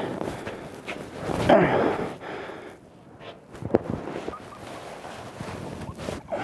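Non-speech vocal sounds: a loud cry falling in pitch about one and a half seconds in, and a shorter, sharper one near four seconds, over faint scuffing movement.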